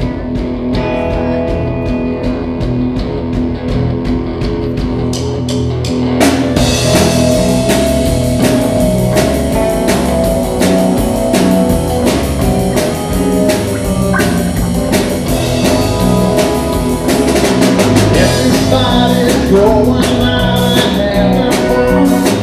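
Live rock band playing through a PA: electric guitars, bass guitar, keyboard and drum kit. It opens with a lighter passage, and about six seconds in the full band comes in louder, with drums and cymbals.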